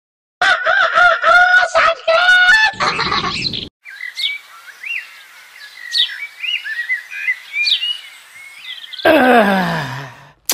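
A rooster crows once, a held, stepping call lasting about three seconds and ending in a rasp. Then small birds chirp over a soft outdoor hiss, and near the end a man gives a long groan that slides down in pitch.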